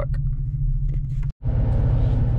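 Pickup truck's engine idling, a steady low rumble heard inside the cab. The sound drops out for a split second about a second and a half in, then comes back unchanged.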